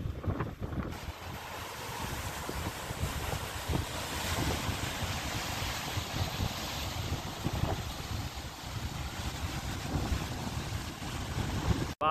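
Sea surf breaking and washing over rocks along the shore, with wind buffeting the microphone in gusts.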